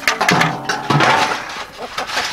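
Clanks and scrapes of a galvanized metal chicken waterer being fitted together and lifted, with short wordless vocal sounds from a man during the first second.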